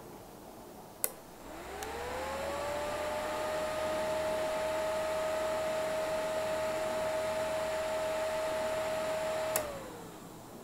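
The relay on a W1209 thermostat module clicks on and a small 12 V DC cooling fan spins up with a rising whine, then runs with a steady whine and a low hum. Near the end the relay clicks off and the whine starts to fall as the fan slows: the thermostat switching the fan on and off as the probe's temperature crosses its set point.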